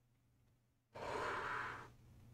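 A person sighing: one breathy exhale of about a second, starting suddenly about a second in, over a faint steady low hum.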